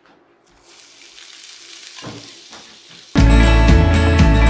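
Sliced onion tipped into hot oil in a frying pan, sizzling and growing louder as more of it lands, with a couple of soft thuds. Loud guitar music cuts in abruptly about three seconds in.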